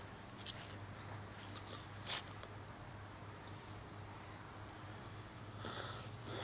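A steady, high-pitched chorus of insects such as crickets, with a few brief scuffs, the loudest about two seconds in.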